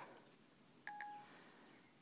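Siri's short two-note chime from an iPod touch's small speaker, about a second in, marking that it has stopped listening and is handling the spoken question. Otherwise near silence.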